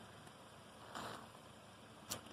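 Near silence: a faint steady hiss, with a soft brief swell about a second in.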